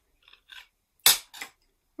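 A small metal tool set down on a hard surface with one sharp clink about a second in, after a few faint handling noises.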